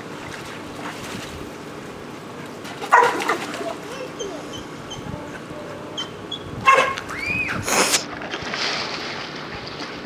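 Pool water splashing and sloshing as a child and a swimming dog paddle through it, with louder splashes about three seconds in and again twice near the seven- and eight-second marks.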